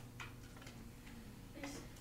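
Quiet room tone with a steady low hum and a few faint, irregular clicks.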